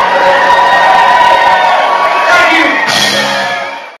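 A live rock band holding out sustained notes while the crowd cheers and whoops, fading out over the last half second.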